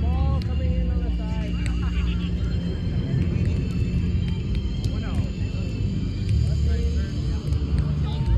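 Volleyball game ambience: scattered voices and calls, a few sharp knocks and a steady low rumble underneath.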